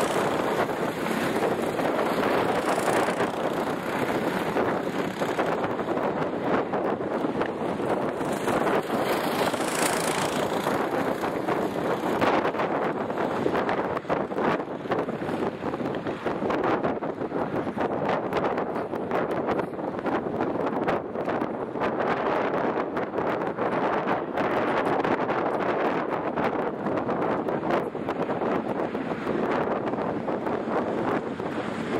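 Wind blowing on the microphone: a steady rushing noise that swells and drops in gusts.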